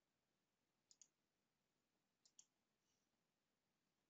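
Near silence broken by faint computer mouse clicks: two quick pairs, one about a second in and another about a second and a half later.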